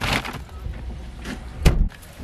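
Plastic bags rustling at the start, then a single loud thump of a car door shutting about one and a half seconds in.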